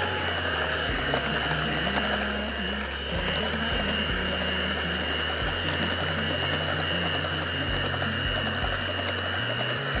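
Electric hand mixer running steadily with a constant high whine, its beaters whisking butter cake batter in a glass bowl, over faint background music.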